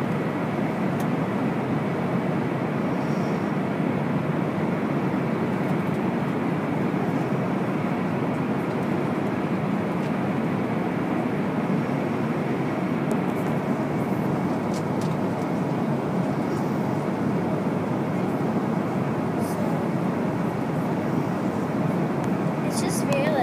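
Airliner cabin noise at cruising altitude: a steady, even rush that does not change.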